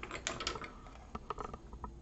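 Faint, scattered light clicks and taps, several a second, of handling noise as small hardware is moved about on a workbench.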